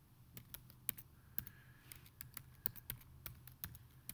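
Typing on a computer keyboard: irregular key clicks, a few a second, over a faint low hum.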